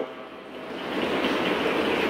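A steady rushing noise, even and without pitch, that swells about half a second in and then holds.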